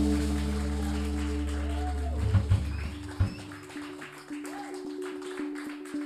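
A live jazz-fusion band of electric guitar, double bass and drums holds its final chord, with a strong bass note that cuts off suddenly about three seconds in. After that come quieter held tones and scattered light clicks.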